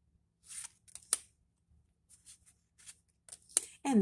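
Tarot cards being handled: a string of soft paper swishes as cards slide over one another, with two sharper card flicks, one about a second in and one near the end.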